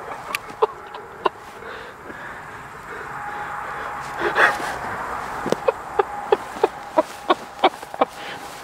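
Crackling firework going off: sharp pops one after another over a steady hiss, a few at first, then about three a second in the second half.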